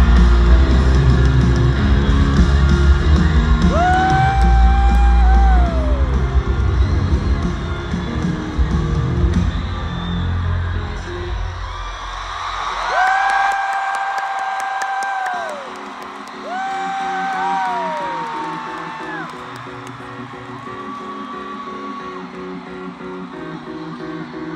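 Live rock concert music heard from the arena crowd: heavy drums and bass for the first half, dropping out about halfway to leave quieter repeated notes. Over it come several long, held whoops from the audience.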